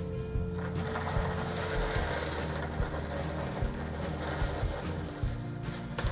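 Sunflower seeds poured from a glass bowl into a plastic vacuum-sealer bag, a continuous dry rattle starting about half a second in and stopping shortly before the end, over background music.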